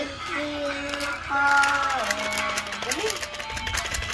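A child singing long held notes without clear words, sliding up and down in pitch, over music.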